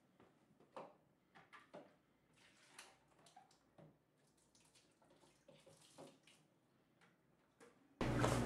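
Near silence, with a few faint, short clicks spread through it.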